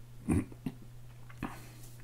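A man's brief wordless vocal sound in a pause between sentences, followed by two faint clicks, over a low steady hum.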